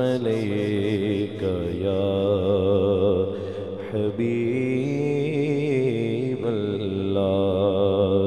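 A male naat reciter sings a naat in praise of the Prophet through a microphone, holding long notes with wavering, ornamented pitch. A steady low drone runs beneath the voice.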